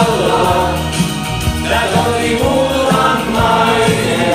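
Men singing a Finnish-language song over instrumental backing.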